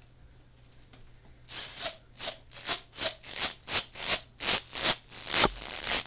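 A plastic fashion doll rubbing and scraping against the camera's microphone. It comes in quick rhythmic strokes, about two or three a second, starting about a second and a half in, and the longest and loudest stroke comes near the end.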